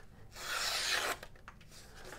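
Sanrenmu 1005-GC knife's mirror-polished blade slicing through a sheet of paper: one hissing cut lasting about a second, starting shortly in.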